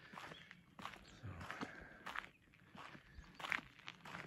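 Footsteps crunching on a gravel road at a steady walking pace, about one step every 0.7 seconds.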